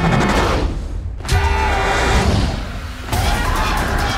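Trailer sound mix: three loud crashing surges about a second and a half apart over a heavy low rumble, with music.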